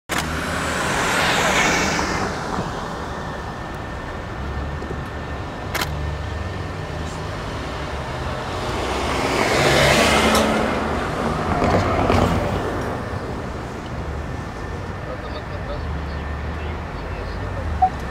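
Traffic heard from inside a slowly moving car: a steady low engine and road rumble, with passing vehicles that swell and fade, loudest about one and a half seconds in and again about ten seconds in. A brief click comes near six seconds in.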